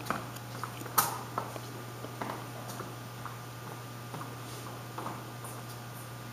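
Light, scattered footsteps of a child walking across a tiled hallway floor, with one sharper tap about a second in as the playground ball is set down on the bean bag. A steady low hum runs underneath.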